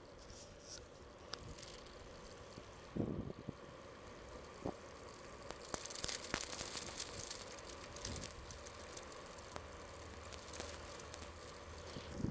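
Kona Dew Plus commuter bicycle riding over city pavement: steady tyre and wind noise with the bike rattling and clicking. A louder thump comes about three seconds in, and the clicks come thicker in the second half.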